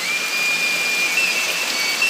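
Heavy rain pouring onto a flooded paved courtyard, a steady hiss, with a thin high whistling tone held over it that steps up slightly in pitch about a second in.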